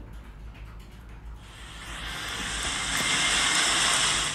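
A swelling hiss from the music video's opening logo, rising from quiet about a second and a half in to its loudest near the end.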